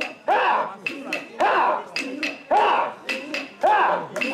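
Mikoshi bearers chanting in rhythm as they carry the portable shrine: a loud rising call a little more than once a second, answered by quieter voices, with sharp clicks in between.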